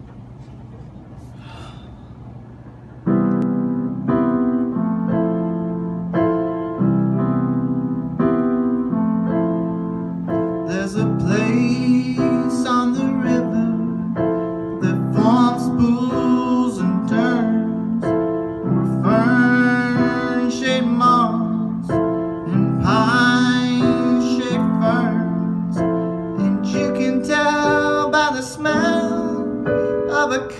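Electric keyboard with a piano sound playing slow, steady chords that change about every two seconds. The chords start suddenly about three seconds in, after faint room hiss. From about ten seconds in, a man sings along in phrases.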